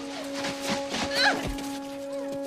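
A man's short cry of pain, rising then falling in pitch, about a second in, over a held music chord, with a few knocks from a scuffle.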